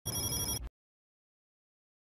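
A short bell-like ringing sound effect, several high tones over a rattling noise, lasting under a second and stopping abruptly.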